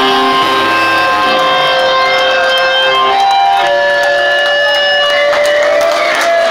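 Electric guitar and bass amps ringing out in long held, siren-like feedback tones that change pitch every second or so, with a rising glide near the end, as a live hardcore punk song winds down without drums.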